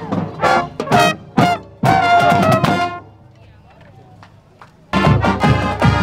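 Marching band brass, trumpets and trombones, playing loud notes, which break off about three seconds in to a quiet gap. About five seconds in the band comes back in suddenly, now with heavy drum beats under the horns.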